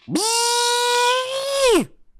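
A man's voice imitating the shoulder-mounted cannon of the Predator: one held, high humming whine that swoops up at the start, holds nearly steady while creeping slightly higher, then drops away in pitch near the end.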